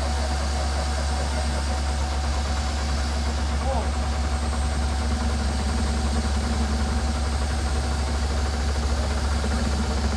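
A vehicle engine idling steadily: an even, low drone that does not change.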